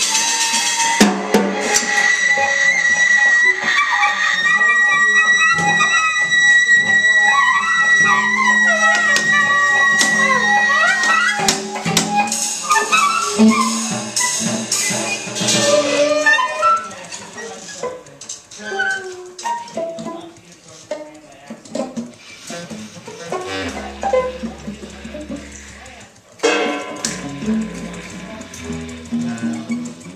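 Free-improvised music on clarinet, wordless voice, cello and drums. A long held high note and wavering pitched lines fill the first half. After about 16 s the playing thins to sparse clicks, scrapes and drum taps.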